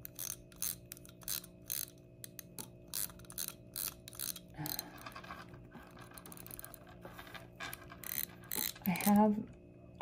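Pocket watch being wound at the crown: a run of small ratchet clicks, about two or three a second, that pauses about halfway and starts again near the end.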